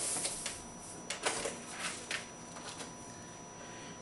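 Handling noise as a paintball marker is fetched and picked up: a rustle followed by a few light clicks and knocks in the first two seconds, then only faint shuffling.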